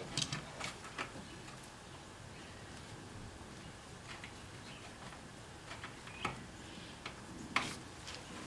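Faint, scattered clicks and taps of a brake hard line and its fitting being handled and lined up at the master cylinder port, with a sharper click near the end.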